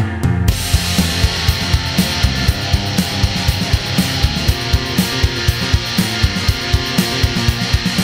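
Instrumental rock music: a full band with drum kit and guitar comes in about half a second in, playing a steady, driving beat with cymbals.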